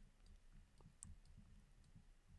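Near silence with faint clicks and light taps of a stylus writing on a tablet, one sharper click about a second in.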